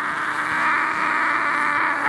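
A man's voice making one long, raspy, sustained cry into a handheld microphone, amplified through the PA; it breaks off at the end.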